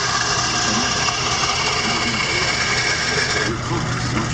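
Wood lathe spinning a baseball bat blank while a turning tool cuts into it: a steady cutting noise over the lathe motor's hum. The cutting noise drops off about three and a half seconds in.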